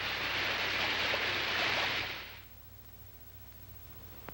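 A loud, steady rushing hiss that fades out a little over two seconds in, leaving only a faint low hum.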